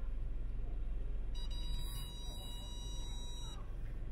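Low steady rumble of a car moving slowly, heard from inside the car. A single steady high electronic beep starts a little over a second in and lasts about two seconds.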